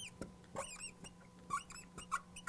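Marker squeaking faintly on a glass lightboard in short strokes as numbers are written, in two clusters of quick squeaks with small taps between them.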